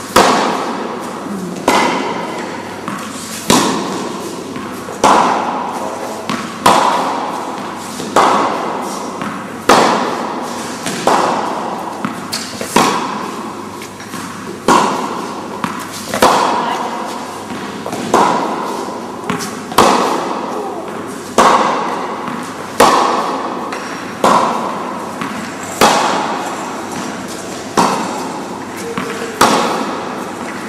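Tennis balls struck by rackets in a steady rally, a sharp hit about every one and a half seconds with quieter ball bounces in between. Each hit rings on briefly as an echo.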